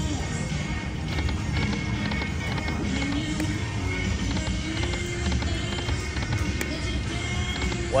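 Buffalo Gold video slot machine playing its reel-spin music and game sounds over repeated spins, against steady casino background noise.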